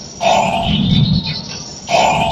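A chorus of voices shouting in unison in two loud bursts, one just after the start and one near the end. The pattern fits a cheer squad's shouted chant.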